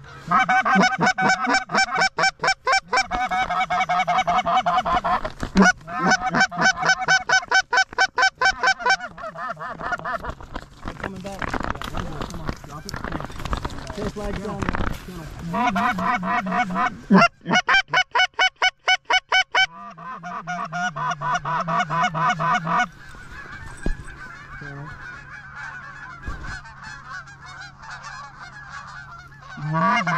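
Goose calling in fast runs of honks and clucks, several loud bursts a few seconds long, with a stretch of rustling in the middle and softer calling near the end.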